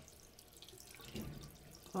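Water running from a tap into a sink, a faint even splashing.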